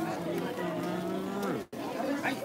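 Crowd chatter with one voice holding a long drawn-out call for over a second, falling in pitch at the end. The sound drops out for an instant near the end.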